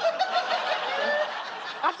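A studio audience laughing together in a broad wash of many voices, easing off slightly toward the end.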